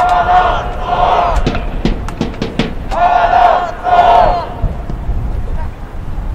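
A large group of football club supporters chanting in unison: two pairs of long shouts, each pair about a second apart, with short sharp beats between them.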